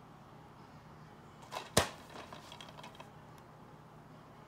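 Plastic DVD case handled in the hand: a small click about a second and a half in, then a sharp, much louder snap just before two seconds, followed by a few light plastic rattles.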